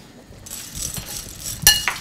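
Metal spoon stirring crisp roasted chickpeas in a ceramic bowl: a scraping rattle from about half a second in, with one sharp ringing clink of spoon against bowl near the end.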